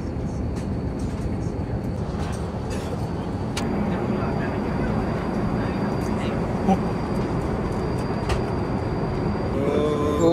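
Steady airliner cabin noise inside an Airbus A350, a low even rumble, with a few light clicks.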